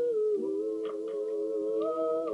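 Two voices singing unaccompanied, holding a long 'ooh' in two-part harmony. The lower note stays steady while the upper one slides down and then back up.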